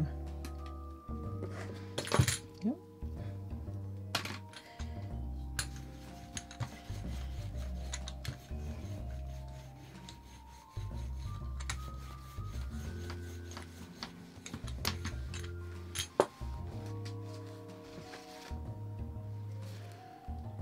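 Background music of soft held notes, with scattered clicks and rubbing from handling painting tools on the gelli plate, and two sharper knocks, one about two seconds in and one near the end.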